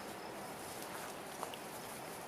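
Quiet outdoor garden ambience: a faint, steady hiss, with one small click just under a second and a half in.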